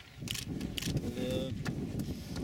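A runner's shoes slapping on a tarmac lane as he passes close by, three separate footfalls, over gusty wind rumbling on the microphone.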